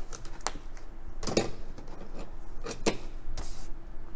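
Cardboard playset pieces and a paper instruction sheet handled on a tabletop: scattered light taps and rustles, with sharper knocks about a second and a half and three seconds in and a brief paper swish near the end.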